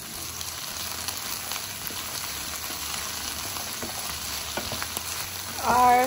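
Sliced okra with onion frying in oil in a nonstick pan, a steady sizzle with fine crackles as a wooden spatula stirs it. A woman's voice comes in near the end.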